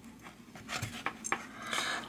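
A few light metallic clicks as a short section of bicycle chain is slid onto a flat metal bar, its steel link plates knocking against the bar. The clicks fall mostly in the second half.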